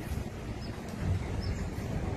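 Steady low outdoor rumble of wind on the microphone mixed with vehicle noise, with a few faint short high chirps.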